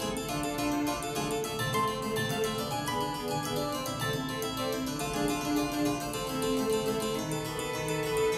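Background music on a harpsichord: a steady stream of quick plucked notes.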